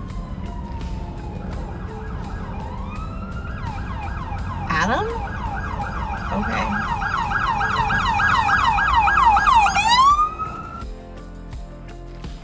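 Emergency vehicle siren: a slow falling wail, then a fast up-and-down yelp at about three cycles a second. The siren grows louder and cuts off about ten seconds in, over a steady low rumble.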